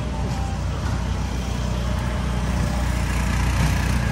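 Steady low outdoor rumble with faint voices of people nearby.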